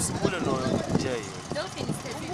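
Indistinct talk of people's voices, no words clearly made out.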